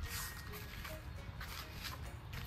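Spray bottle misting ceramic spray wax onto a jet ski's body: two short hissing sprays, one at the start and one just over a second in, over faint background music.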